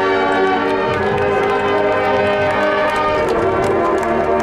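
Marching band playing sustained brass chords with ringing, bell-like mallet percussion and scattered percussion strikes.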